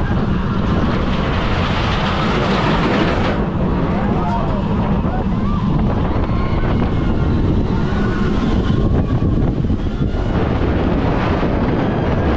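Wind rushing over the microphone and a steel roller coaster train rumbling along its track at speed, a steady loud roar throughout.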